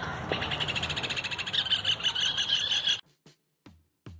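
Outdoor birdsong: a bird chirping in a rapid, evenly spaced run of high notes, about ten a second, over light outdoor hiss. It cuts off suddenly about three seconds in.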